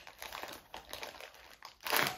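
Plastic blind-bag packaging crinkling as it is pulled and twisted by hand in a struggle to tear it open, in a run of small irregular crackles with a louder crinkle near the end.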